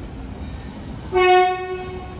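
Seattle Monorail train's horn sounding one short blast about a second in, a single steady tone that fades out after under a second, over the steady rumble of the train at the station.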